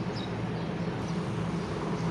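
Steady low hum over an even hiss: a constant background drone in the room with no other events.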